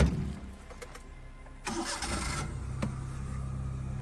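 A sharp knock right at the start, then a Suzuki car's engine is started: a short noisy burst about two seconds in as it catches, after which it settles into a steady low idle.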